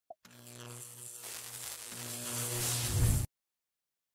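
Intro logo sound effect: a swelling riser of steady low tones under a noisy wash that grows louder for about three seconds, then cuts off suddenly.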